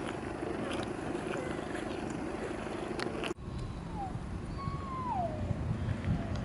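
Outdoor ambience on a walk, a steady low murmur with faint ticks, broken by a cut about three seconds in. After the cut come two falling whistle-like calls, a short one and then a longer one.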